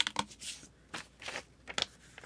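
Faint handling of a sheet of paper: light rustling with a few sharp clicks.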